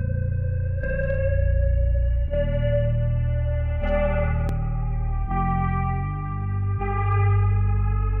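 A trap beat played backwards: reversed guitar-like notes that swell and then stop sharply, with the chord changing about every one and a half seconds over deep sustained bass.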